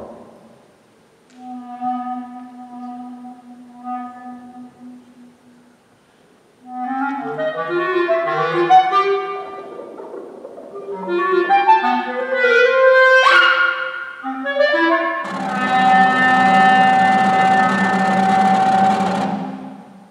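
Solo clarinet playing a contemporary piece: a long low held note, then quick runs of notes with a fast upward glissando, ending in a loud, dense held sound mixed with a rush of noise that cuts off suddenly.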